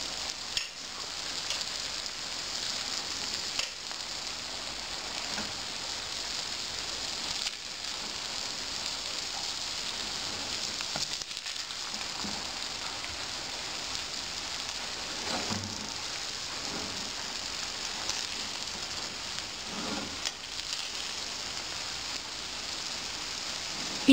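Arroz con pollo sizzling steadily in a large metal pan as the rice dries out over a medium flame, while a perforated metal skimmer turns it, with occasional light scrapes and taps against the pan.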